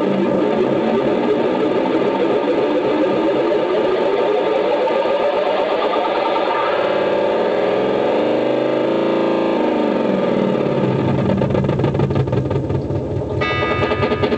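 Guitar delay pedal in runaway feedback: a loud, dense wash of self-oscillating repeats that bends in pitch midway through and thickens into a low drone near the end.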